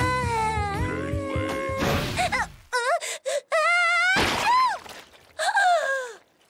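Cartoon soundtrack: a dreamy music cue with a wavering melody for about two seconds, cut off by a short hit. Then a girl character's wordless cries and groans of disgust, broken into short wavering wails, with another short hit about four seconds in.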